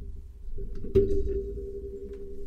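A dull thump about a second in, over a steady low hum.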